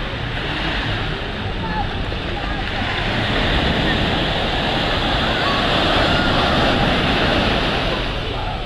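Sea surf washing onto a sandy beach, a steady rushing noise that grows louder about halfway through as a wave breaks, with faint distant voices of people in the water.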